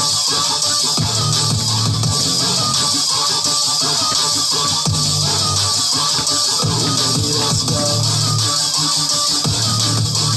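Electronic hip-hop/pop backing track in an instrumental stretch between sung lines, with a heavy bass line that returns in phrases of about a second and a half.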